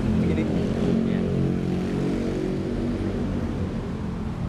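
A motor vehicle engine running steadily, a low hum of several stacked pitches that thins out near the end.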